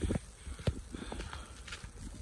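Footsteps in deep snow: uneven soft thuds and clicks, one sharper about two-thirds of a second in, over a low rumble.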